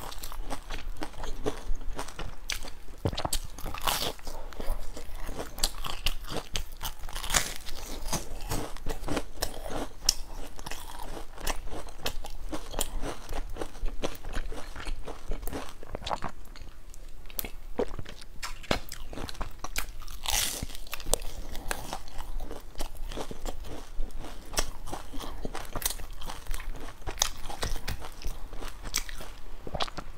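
Chewing and crunching of a crusty, sesame-coated fried bun with a dark bean-paste filling: a steady run of small crunches and mouth clicks.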